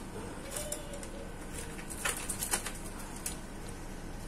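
A bird flapping inside a wire cage as it is caught by hand, its wings and the cage wire giving sharp rattles and clicks, bunched most thickly about two seconds in.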